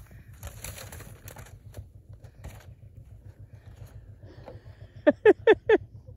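A person laughing near the end, four short loud bursts of "ha", after several seconds of only a faint low rumble and hiss.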